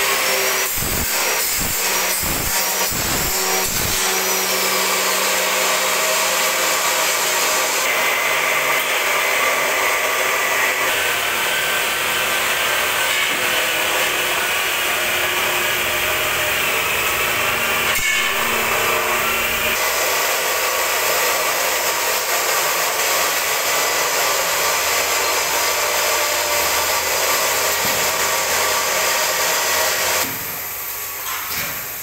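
Steady, loud power-tool noise of steel being worked in a metal workshop. About six knocks, two a second, come in the first four seconds.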